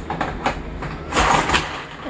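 A pink plastic hand-press kitchen gadget, likely a manual chopper, pressed down onto a jar on the counter. A short rushing scrape comes about half a second in, and a longer, louder one about a second in.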